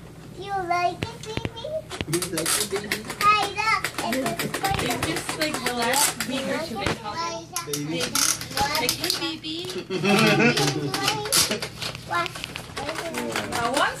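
Young children's voices chattering and calling out, without clear words, over repeated crackling and rustling of paper.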